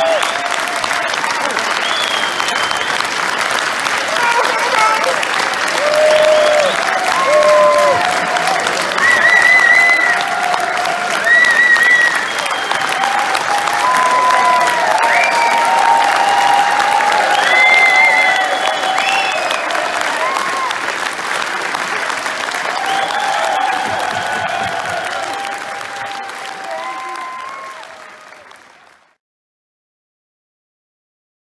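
Theatre audience applauding steadily at a curtain call, with scattered cheers and shouts over the clapping. The sound fades out about a second before the end.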